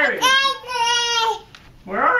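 A toddler's voice: a high, held, sing-song cry in two notes, the second a little lower, lasting about a second in all.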